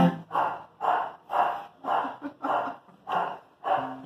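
A man laughing in a run of about seven short bursts, roughly two a second, as his acoustic guitar strumming stops.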